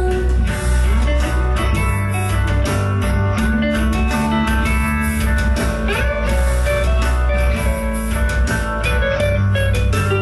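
A rock band playing live in an instrumental passage with no vocals: electric guitar over a drum kit.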